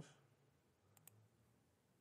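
Near silence, with two faint clicks close together about a second in.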